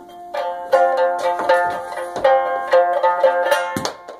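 Plucked string instrument played with rapid picked notes over held lower notes, ending with an abrupt cut-off shortly before the end.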